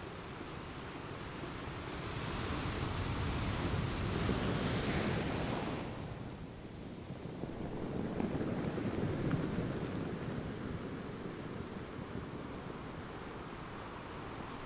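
Small waves washing up on a beach in two swells a few seconds apart. The first swell has a bright hiss of foam and ends abruptly about six seconds in. Wind buffets the microphone.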